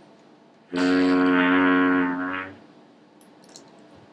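Homemade horn made from a coiled hose, lip-buzzed into one steady low note that starts just under a second in and is held for about two seconds before stopping.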